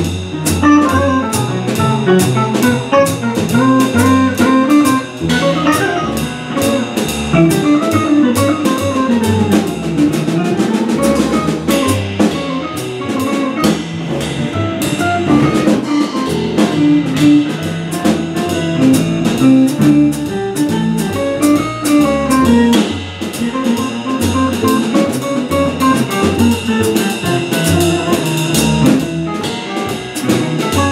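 A live jazz quartet of saxophone, archtop electric guitar, upright bass and drum kit playing a mid-tune passage, with a walking melody over the bass and a steady stream of cymbal strokes from the drums.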